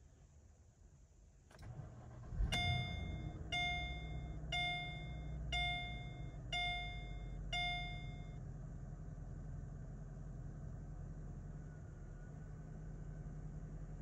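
A Mercedes-Benz SL550's 5.5-litre V8 starts: a short crank catches about two and a half seconds in and settles into a steady idle. A dashboard warning chime sounds six times, about once a second, over the first seconds of running.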